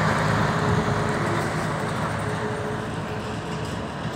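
Mercedes-Benz grain truck and trailer driving away, its diesel engine and tyres fading steadily as it moves off.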